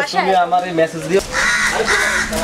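A crow cawing: three harsh caws in quick succession, starting a little past halfway, after a voice draws out one word on a steady pitch.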